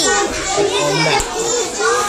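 Young children's voices talking and calling out, several overlapping at times.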